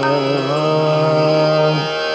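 Male Hindustani classical voice singing a khyal in Raag Ahir Bhairav. He settles out of a descending phrase into one long steady note, held over harmonium and a drone, and breaks it off near the end.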